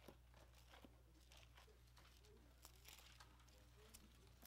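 Near silence: a low steady room hum with faint, scattered rustles of Bible pages being turned.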